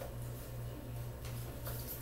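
Quiet room tone: a steady low hum under a faint hiss.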